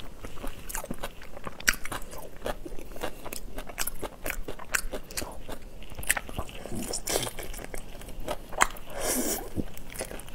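Close-miked biting and chewing of whole shell-on shrimp: irregular sharp crunches and crackles as the shells break between the teeth.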